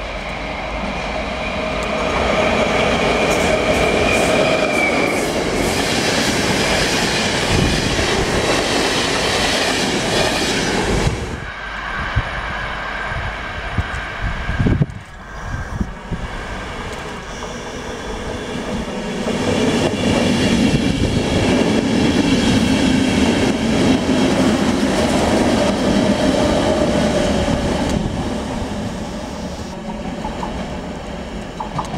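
ČD class 471 CityElefant double-deck electric multiple units running past: loud wheel-on-rail noise with a steady whine above it. It comes as two passes, split by a drop in level about halfway through.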